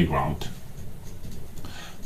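A pen moving quietly over the paper of a book page.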